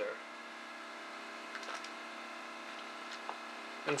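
Room tone: a steady hum with a few faint small clicks, two about a second and a half in and one a little after three seconds.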